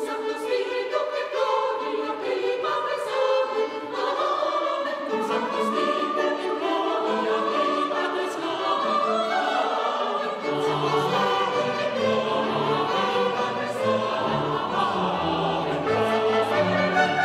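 Mixed choir singing a Mass setting, with chamber organ and a small baroque orchestra accompanying; a low bass line comes in about ten seconds in.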